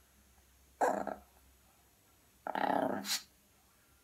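Small dog barking twice at a toy's reflection in a mirror: a short bark about a second in, then a longer one ending in a sharp click.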